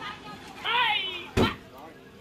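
A van's rear lift-up hatch slammed shut: a single sharp, heavy thud about a second and a half in.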